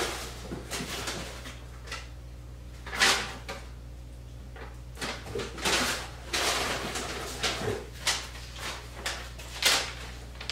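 Someone off to one side rummaging to find a paper receipt: irregular rustles, knocks and scrapes, the loudest about three seconds in and again near the end, over a steady low hum.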